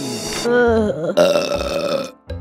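A long, loud cartoon burp, voiced with a wavering, gurgling pitch, starting about half a second in.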